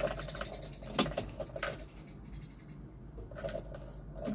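Light clicks and rattling of the ignition key and keyring being turned in a Suzuki Carry Futura's ignition switch, with the sharpest click about a second in. The ignition is switched on, but the engine is not running.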